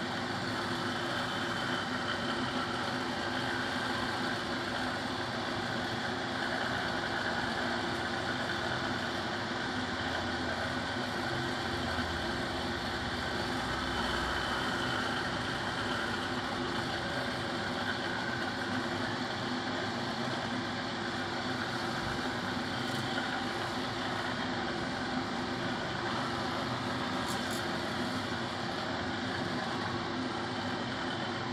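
Handheld corded electric vibrating massager running steadily, its motor humming as it is pressed against and moved over a face.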